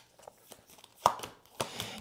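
Tarot cards being handled and drawn from the deck: a few light snaps and taps of card on card, the sharpest about a second in.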